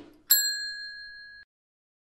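A single bell 'ding' sound effect: one sharp strike about a third of a second in, ringing with a clear tone that fades and then cuts off suddenly at about a second and a half. Just before it comes the fading tail of a short rushing noise.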